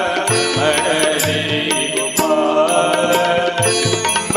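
Live Hindu devotional bhajan music: sustained, chant-like melodic notes over sharp percussion strokes, heard through a stage sound system.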